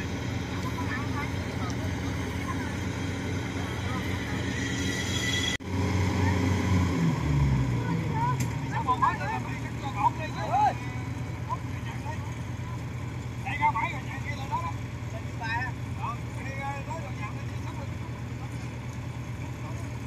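Diesel engines of Kubota DC-95 and DC-70 rice combine harvesters running steadily in the field, with the harvesting just finished. About six seconds in, after a sudden break, one engine's pitch falls as it slows down.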